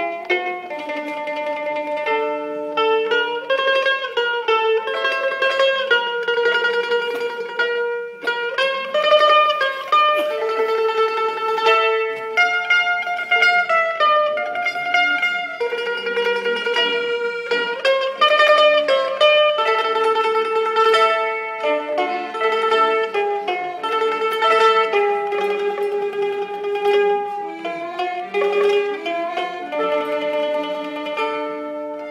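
A small folk ensemble of mandolin and erhu (Chinese two-string fiddles) playing a Russian folk melody. Long held melody notes run over the mandolin's plucked notes.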